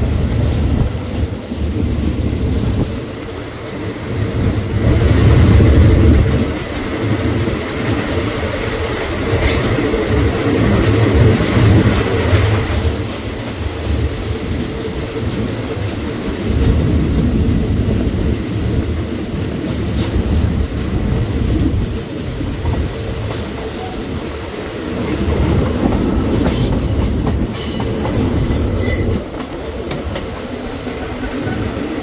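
Passenger carriage of a Thai ordinary train running on the rails, heard through an open window: a steady low rumble with clicks from the wheels, and thin high-pitched wheel squeals in the second half.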